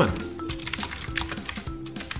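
Computer keyboard typing, a rapid run of key clicks, with background music underneath.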